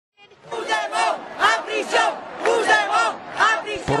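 A crowd of demonstrators shouting together, their voices rising and falling in a regular rhythm about twice a second like a chanted slogan. It starts about half a second in.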